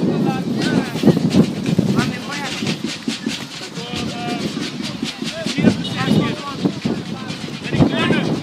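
Several voices calling out at once across a football pitch: youth players and coaches shouting during play, the calls overlapping and unintelligible.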